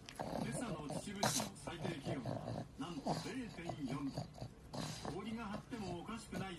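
A pug vocalizing in a long run of wavering cries that rise and fall in pitch, with short breaks between them.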